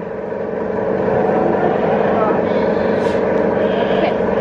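A loud, steady mechanical hum made of several unchanging tones, with no rise or fall.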